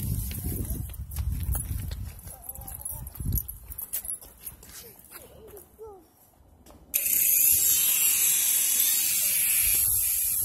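A toy coaxial RC helicopter's electric motors and rotors start suddenly about seven seconds in and run with a loud, steady, high whir as it lifts off. Before that there is low wind and handling rumble on the microphone, with a few faint children's voices.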